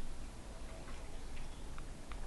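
Quiet chewing of deep-fried battered food, with a few small crisp clicks at irregular intervals.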